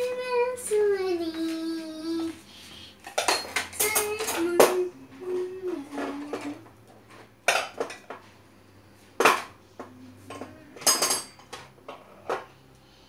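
Metal cutlery clinking as a child drops spoons and forks into the compartments of a plastic kitchen-drawer cutlery tray: a quick cluster of clinks a few seconds in, then single clinks every second or two. A child's voice sings a few wordless, sliding notes at the start and again in the middle.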